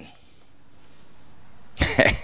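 A man laughing into a handheld microphone. After a stretch of faint background hiss, the laugh breaks in suddenly near the end as a run of short, breathy bursts.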